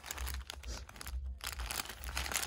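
Plastic packaging crinkling irregularly as a card-backed pack of wired garland ties and cellophane-wrapped artificial garland are handled, over a low rumble.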